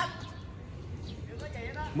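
Faint voices of people talking over a low, even outdoor background, with a short click right at the start.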